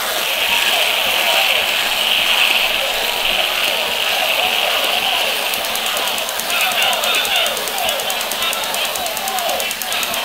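Children's voices, unintelligible, with a steady high buzzing noise through the first six seconds that then breaks up.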